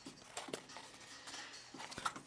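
Faint handling sounds from a cardboard knife box as a folding knife is taken out and the box set aside: a few soft taps about half a second in and again near the end.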